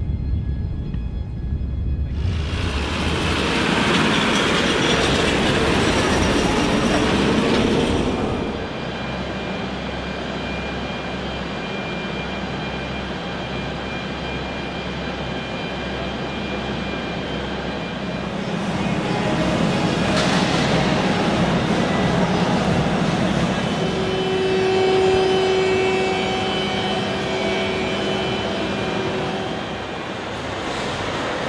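Jet aircraft engine noise on an airfield: a loud wash of noise that cuts off suddenly about eight seconds in, then a steadier hum with thin whining tones that swells again in the second half.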